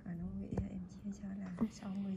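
A voice talking quietly, with two short clicks about half a second and a second and a half in.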